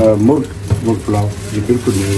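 Voices talking over a steady low hum, while aluminium foil is pulled off a large aluminium cooking pot, crinkling.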